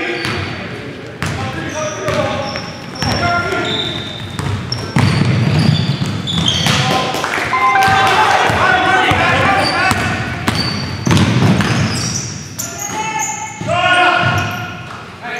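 Live sound of an indoor basketball game: the ball bouncing on the hardwood floor, short high sneaker squeaks, and players' voices calling out across the court.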